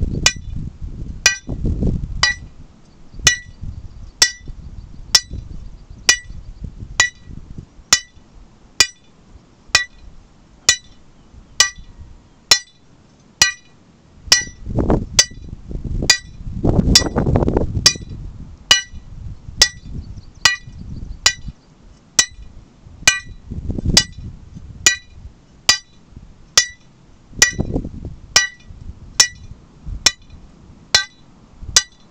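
A lump hammer striking the top of a steel hand-drilling rod about once a second, each blow a sharp metallic clink that rings briefly. The rod is turned between blows so its tungsten bit chips its way into the rock.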